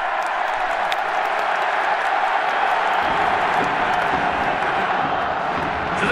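Stadium crowd in the stands cheering: a steady wash of many voices that fills out lower down about halfway through.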